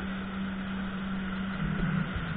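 Jet ski engine running steadily at speed, with the rush of water and spray from the wake. Near the end the engine note drops.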